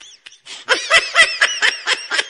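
High-pitched, rapid giggling, a quick run of short laughing syllables about five a second, starting after a brief quiet gap in the first half-second or so.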